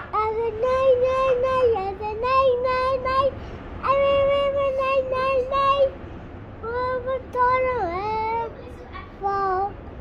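A toddler singing in long held, high notes, several phrases with short breaks between them, the pitch swooping down and back up about eight seconds in.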